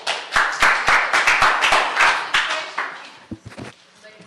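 Audience applauding, dying away after about three seconds with a few last claps.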